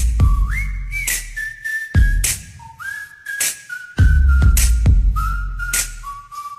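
Electronic theme music with a single whistle-like lead melody sliding between notes, over deep bass hits about every two seconds and sharp percussive hits in between.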